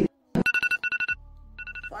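Electronic alarm tone beeping in three short, quick bursts: a wake-up alarm sound effect.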